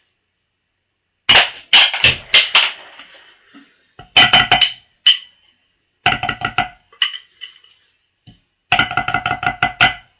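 Drumsticks playing a tenor drum solo on a multi-pad marching tenor practice pad: fast runs of strokes in four short bursts with brief pauses between them.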